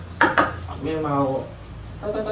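Two sharp clacks as a capped milk bottle is set down and knocked against a tabletop, followed by a short hummed vocal sound from a man.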